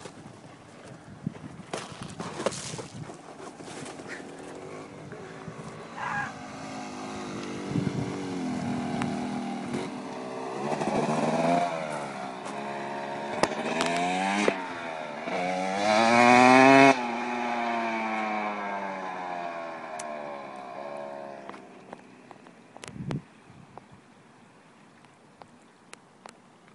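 2005 Yamaha YZ250 single-cylinder two-stroke dirt bike engine revving hard, its pitch climbing again and again as it pulls through the gears. It is loudest about two-thirds of the way in, then the throttle comes off abruptly and the falling engine note fades away.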